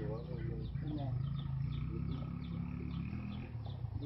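Short wavering voice sounds near the start and about a second in, over a steady low rumble. A high chirping call repeats about three times a second in the background.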